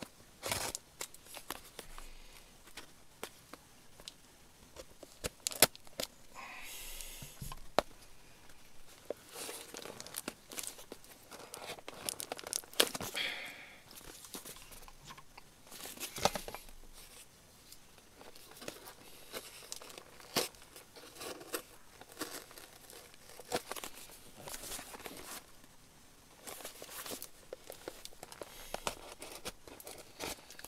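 A cardboard parcel being opened by hand: irregular tearing, with crinkling and rustling of paper and sharp clicks in short bursts.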